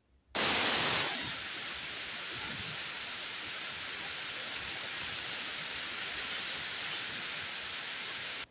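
A loud, even hiss like static that cuts in suddenly near the start, is loudest for its first half second, then holds steady.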